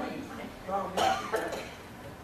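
A person coughing, two short sharp coughs about halfway through.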